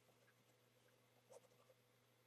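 Near silence, with the faint scratch of a felt-tip marker writing on paper, clearest as one short stroke about halfway through.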